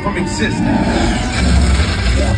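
Loud indoor roller coaster ride audio: voices and music from the ride's soundtrack over a deep rumble that swells about a second and a half in.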